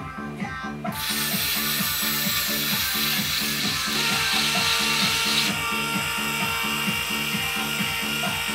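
Background music with a steady beat. From about a second in, a motorized lamp arm's small electric motors whine as they tilt the lamp head and swing the arm, the whine shifting in pitch twice.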